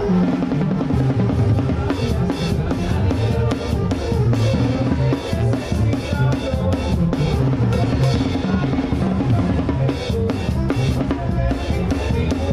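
A banda drum kit played live: a busy, fast pattern on the tarola (snare) and drums with cymbal hits, over the tuba's low bass line.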